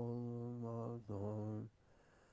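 A low male voice chanting in long held notes, like a mantra. One sustained note breaks off about a second in, then a shorter note follows and stops near the end.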